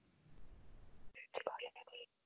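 Faint, quiet speech close to a whisper, starting a little past the middle, over a faint low rumble.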